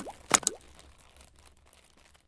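Sound effects for an animated logo reveal: a few sharp pops with short upward-gliding tones in the first half second, then dying away.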